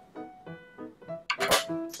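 A short, sharp click of a pair of small scissors on wood about a second and a half in, over soft background music.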